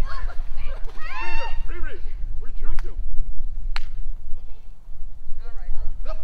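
Shrieks and laughter of a family jumping into a small inflatable paddling pool, with water splashing; the squeals are loudest in the first couple of seconds.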